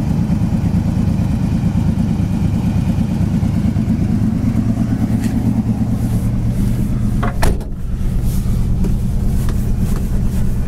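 1968 Pontiac GTO's 400 four-barrel V8 idling steadily, with a single thump about seven and a half seconds in.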